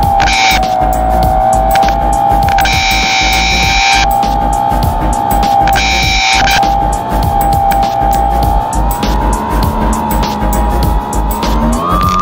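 The E-flite Opterra's brushless electric motor and propeller whine steadily in flight, heard from the onboard camera with wind rumbling on its microphone. The pitch rises just before the end as the throttle opens. Several brief bursts of a higher buzz come and go.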